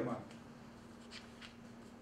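Quiet small-room tone with a steady low electrical hum, and two faint brief rustles a little over a second in.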